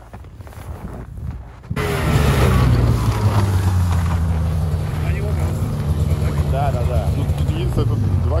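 RM Taiga Varyag 550 V snowmobile engine running as the machine moves off slowly through the snow. It comes in abruptly about two seconds in and then holds a steady low drone.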